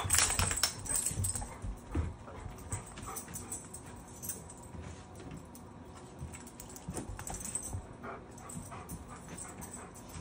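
Two Dogo Argentinos moving about on a door mat and carpet: scattered small clicks of claws and collar tags, with a short human laugh at the start.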